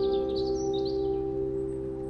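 Soft, slow lullaby music: one long held note slowly fading, with birdsong chirping high above it during the first second or so.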